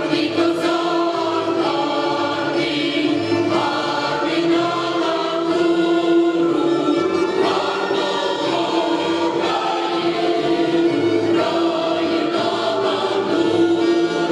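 Mixed folk choir of men's and women's voices singing a Ukrainian folk song, accompanied by accordion and double bass.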